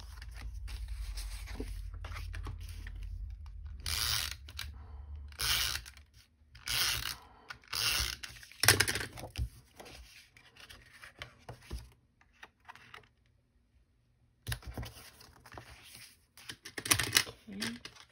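Paper card stock being handled and slid about on a craft table, heard as several short, sharp rustles and scrapes. A low steady rumble fills the first few seconds.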